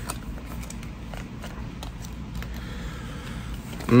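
Scattered light clicks and faint rustling from handling a plastic action figure and its packaging, mostly in the first couple of seconds, with a short hum of a voice at the very end.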